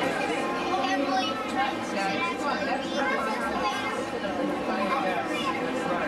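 Chatter of many overlapping voices, people talking at once without any one voice standing out.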